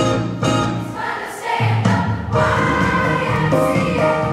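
Large children's choir singing with musical accompaniment, short rhythmic chords at first, then held notes from about a second and a half in.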